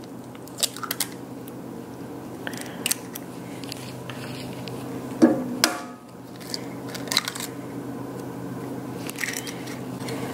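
Two eggs cracked on the rim of a cast iron skillet and dropped into a pan of melted butter and sugar: short sharp cracks and crunches of eggshell, the loudest about five seconds in. A steady low hum runs underneath.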